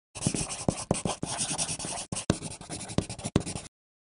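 Writing sound effect: a pen scratching on paper in quick, uneven strokes, stopping about half a second before the end.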